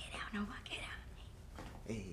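Hushed whispering voices, breathy and low, with a few short voiced sounds.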